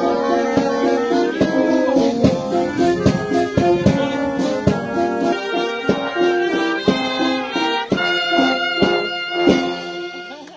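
Small military wind band of clarinets and brass playing a tune live, with a steady beat, stopping near the end.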